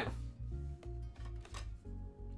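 Background music with a steady bass beat, and faint clicks of hard plastic grading slabs being handled.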